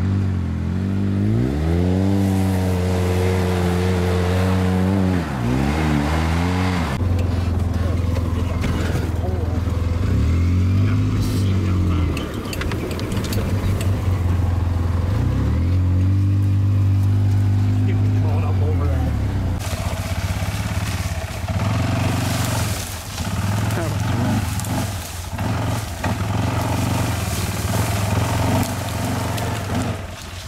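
Polaris RZR side-by-side engine revving up, holding and easing off three times as it drives. In the last third the engine noise turns rougher and uneven, broken by frequent knocks and rattles.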